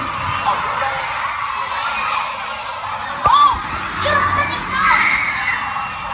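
Crowd noise: many children shouting and chattering at once, with a brief sharp loud sound about three seconds in and raised shouts soon after.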